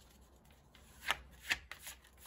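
Tarot cards being shuffled by hand, faint at first, then a few sharp card snaps in the second half.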